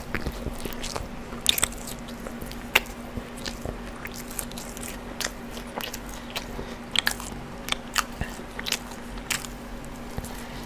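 A person chewing food right up against the microphone: wet mouth clicks and crunches come irregularly throughout, the sharpest about a second and a half and nearly three seconds in. A faint steady hum runs underneath.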